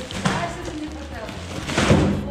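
Plastic carrier bags rustling as they are packed into a cardboard box, with a louder burst of handling noise near the end, over background music.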